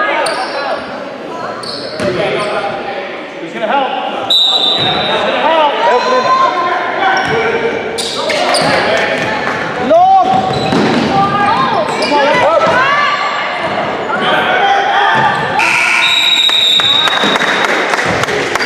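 Indoor basketball game: a basketball bouncing on a hardwood court amid shouts from players and spectators, all echoing in a large gym. A few sharp bangs and short high squeaks stand out.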